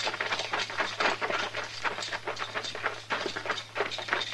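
Sound-effect footsteps of people running over dirt: quick, irregular footfalls several a second. A low steady hum from the old recording runs underneath.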